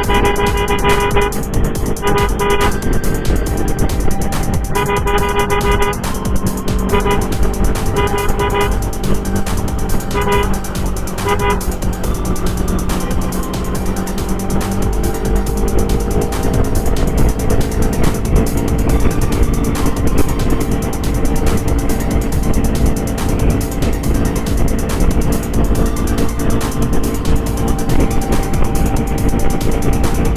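Motorcycle riding noise, engine and wind, with a horn sounding in a series of short blasts over the first twelve seconds, as escort riders sound horns to clear traffic ahead of an ambulance.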